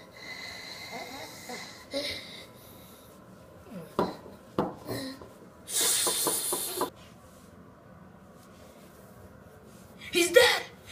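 Mouth-made sipping and slurping noises as a plush toy pretends to drink from a can. The loudest is a hissy slurp of about a second just past the middle, after two light handling knocks.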